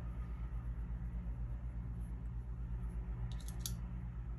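Hands handling and pinning knit fabric, with a few short clicks a little over three seconds in, over a steady low hum.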